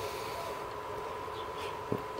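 Low steady background noise with a faint, steady, high single tone running through it, and a small click near the end.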